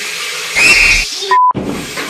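Tap water running into a bathroom sink, cut off about half a second in by a sudden loud noise lasting about half a second, followed by a short steady beep.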